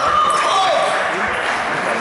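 Murmur of voices in a reverberant sports hall just after a table tennis rally ends, with a few faint knocks.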